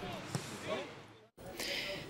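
Faint ambience of a football training pitch: distant voices and a single football kick about a third of a second in. The sound fades and drops to silence a little past a second in.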